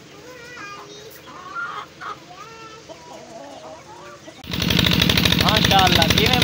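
Chickens clucking softly. About four and a half seconds in, a loud, steady engine sound cuts in abruptly.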